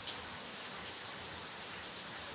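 Steady rain falling: an even hiss with no pauses.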